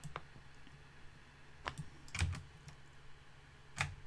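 A handful of faint, scattered computer keyboard clicks, spaced a second or so apart, with a soft low thump about two seconds in.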